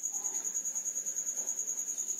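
A cricket chirping: a steady, high-pitched trill that pulses rapidly and evenly.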